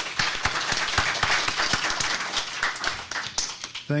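Audience applauding: many hands clapping at once, thinning a little near the end.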